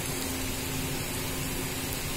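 Steady kitchen background noise: an even hiss with a faint low hum, with the gas stove still lit under the pan.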